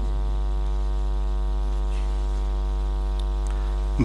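Steady electrical mains hum: a low buzzing drone with many evenly spaced overtones.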